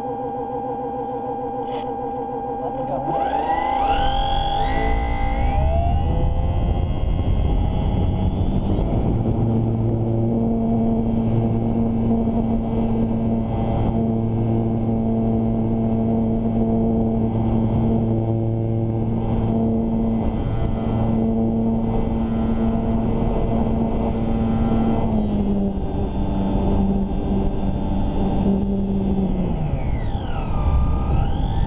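Electric motor and propeller of a HobbyZone Super Cub S RC plane, heard from a camera mounted right behind the propeller. A whine rises steeply about three seconds in as the throttle opens for takeoff, then holds steady at high power. It eases slightly near the end and drops in pitch as the throttle comes back.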